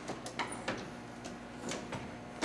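Quiet room tone with a low steady hum and a few faint, short clicks.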